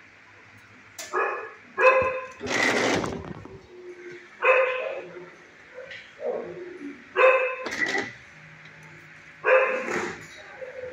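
A dog barking repeatedly, one bark every second or two, with a noisier, harsher burst about two and a half seconds in.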